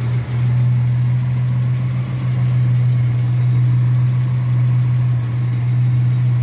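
Mitsubishi Montero's 3.0-litre V6 engine idling steadily, heard up close in the open engine bay as a constant low hum.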